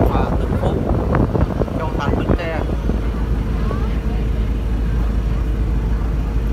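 Steady low rumble of a car ferry's engine running, with a faint steady tone joining about halfway through. Indistinct voices of people talking on deck are heard in the first half.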